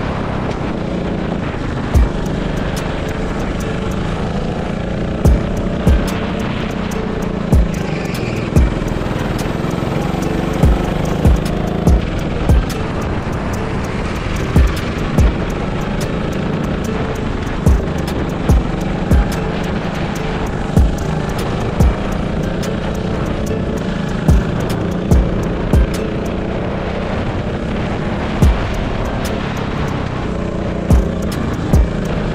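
Go-kart engine running steadily at speed, under a drill-style music beat, with sharp knocks every second or so.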